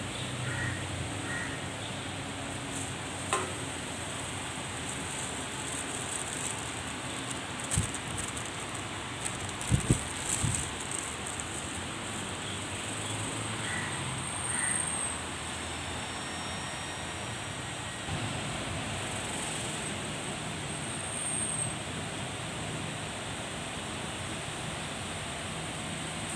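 Bus interchange background: a steady hum of buses and traffic, broken by a few short sharp knocks around three, eight and ten seconds in.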